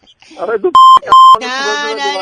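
Two short, loud censor bleeps in quick succession, each a steady beep about a quarter second long, with a man's voice just before and after.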